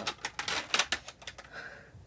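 Clear plastic cases clicking and tapping against each other and against fingers as they are handled and turned over: a quick, uneven series of sharp clicks.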